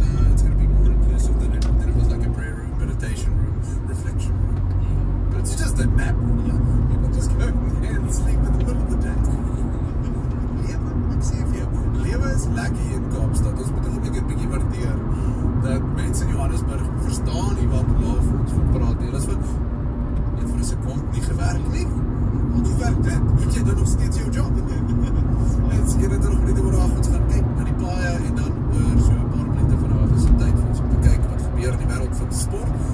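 Car interior road and engine noise while driving at speed on a highway, with a car radio playing voices and music over it.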